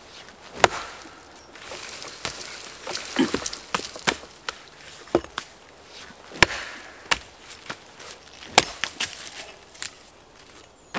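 Axe blows chopping into a birch log, a series of sharp strikes about one a second, with the wood splintering and cracking between them as the log is split into firewood.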